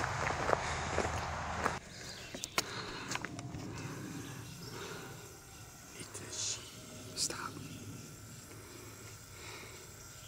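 Footsteps on a gravel trail for about the first two seconds, stopping suddenly. Then a quiet stretch with a few faint clicks and rustles.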